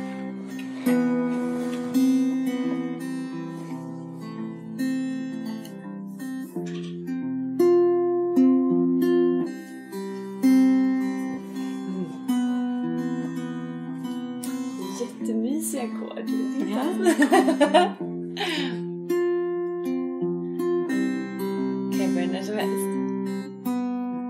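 Acoustic guitar strummed in slow chords under voices chanting a mantra in long, held notes, sung as call and response. A few seconds past the middle the voice slides and wavers more freely before settling back into held notes.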